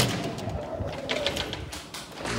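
A door's metal push bar clunks loudly as the door is pushed open at the start, followed by quieter footsteps.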